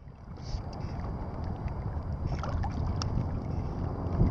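Choppy water lapping close to the microphone, with wind buffeting it in a steady low rumble and a few faint ticks.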